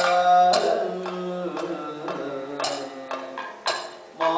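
Kathakali accompaniment: a male vocalist sings a held, slowly descending line of the padam while the sung part fades, and sharp metallic strikes of the chengila gong and cymbals mark time about once a second.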